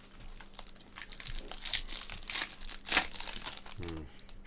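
Foil wrapper of a trading-card pack crinkling as it is torn open and the cards are slid out, with one sharper, louder crackle about three seconds in.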